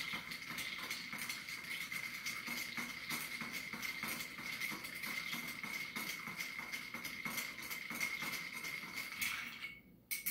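Ice being stirred with a metal bar spoon in a glass mixing glass: a continuous fast clicking and rattling of ice cubes against the glass, with a steady high ringing tone. Both stop just before the end as the spoon is lifted out.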